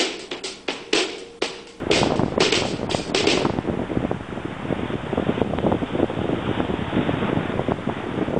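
A drum-beat music track for the first couple of seconds, which cuts off abruptly. It gives way to steady outdoor noise of ocean surf and wind buffeting the microphone.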